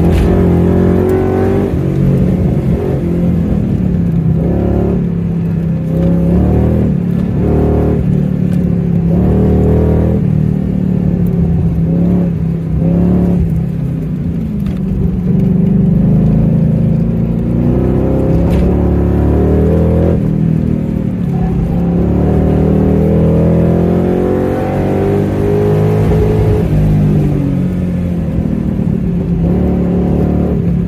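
Car engine heard from inside the cabin, repeatedly revving up under throttle and easing off as the car accelerates and slows, its pitch rising and falling many times.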